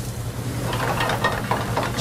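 Shrimp and diced vegetables sizzling in sauté pans over gas burners, a steady hiss with fine crackling that thickens about half a second in, over a steady low hum.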